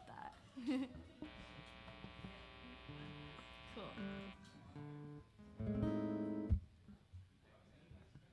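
Acoustic guitar: a strummed chord rings out for about three seconds, a few single notes follow, then a short, louder strum is cut off sharply a little past the middle.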